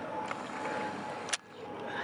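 Outdoor background noise: a steady hiss with a faint thin hum running through it, broken by one sharp click just past a second in, after which the sound briefly drops away.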